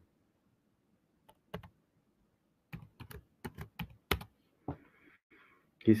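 Typing on a computer keyboard: one keystroke, then a quick irregular run of about eight keys, then one more, as a short search entry is typed.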